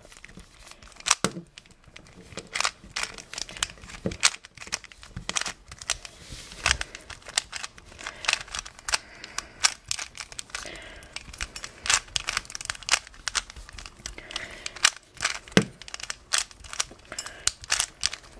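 Stickerless Dayan GuHong 3x3 speed cube being scrambled by hand: rapid, irregular plastic clicks and clacks as its layers are turned.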